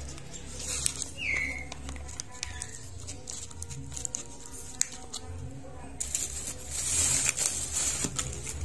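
A small bird gives two short falling chirps in the first few seconds. Scattered light clicks and, near the end, about two seconds of crinkly rustling come from a plastic sachet and a plastic feed cup being handled.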